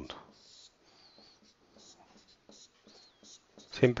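Dry-erase marker writing on a whiteboard: faint, short scratchy strokes with a couple of brief high squeaks as the marker drags.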